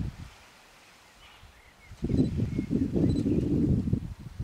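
Wind buffeting the microphone in rumbling gusts. It drops away for about the first two seconds and comes back strongly about two seconds in. During the lull, faint short high bird calls are heard.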